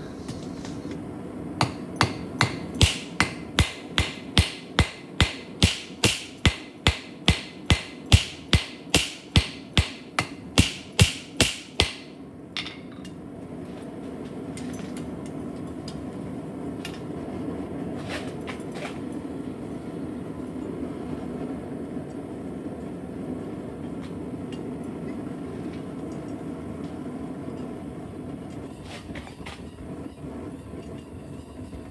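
Hand hammer striking a hot rebar cross on a steel anvil, bevelling its points: about twenty sharp, evenly spaced blows, roughly two a second. The blows stop about twelve seconds in, leaving a steady low rumble with a few faint clicks.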